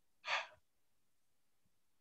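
A single short breath, a sigh-like puff of air lasting about a quarter second, heard a little after the start.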